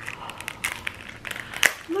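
Thin clear plastic bag crinkling in the hands as it is pulled at, a run of small irregular crackles with a sharper one near the end.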